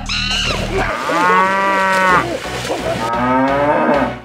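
A long, drawn-out animal call like a cow's moo starts about a second in, and a second, shorter call follows near the end.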